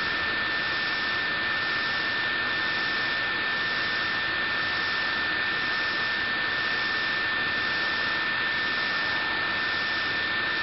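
Steady background hiss with a thin, constant high-pitched whine running through it, level and unchanging, with no clicks or other events.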